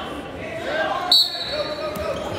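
Referee's whistle: one steady, shrill blast of under a second, starting about a second in, that starts the wrestling from the referee's position. Spectators are talking and calling out in the echoing gym around it, and there is a short sharp knock just before the end.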